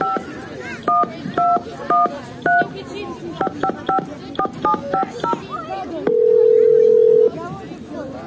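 Telephone keypad tones as a number is dialed: a string of short two-note beeps, a few spaced out and then about ten in quick succession. After a pause comes one long, steady, low ringing tone, the ringback signal of the call going through.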